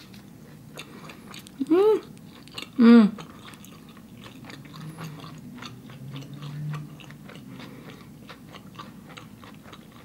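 Close-miked chewing of a mouthful of vegan cheeseburger, with many small wet clicks and crunches. Two loud, short hummed "mm"s that rise and fall in pitch come about two and three seconds in, and a quieter closed-mouth hum follows a few seconds later.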